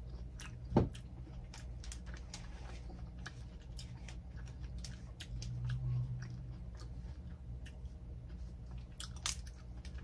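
Close-up chewing of fresh fruit: a steady run of wet, crunchy mouth clicks, with a louder crunch about a second in and again near the end.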